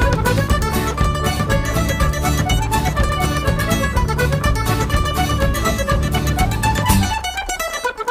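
Instrumental break of a folk-band sea shanty: a quick melody over a steady bass, with no singing. About seven seconds in, the bass drops out and only the lighter, higher instruments play.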